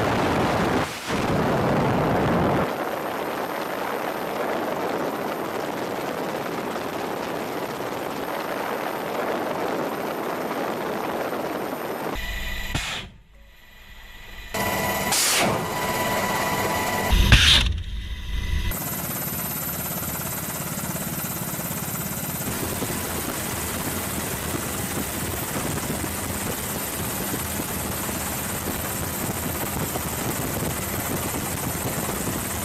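Helicopter engine and rotor noise heard from aboard the aircraft, steady for most of the time. It is broken by a cut about twelve seconds in and by a few sharp bangs between about fifteen and eighteen seconds.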